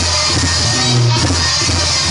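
Loud dance music played for a chinelos dance, with a bass line that changes note about every half second under held higher notes.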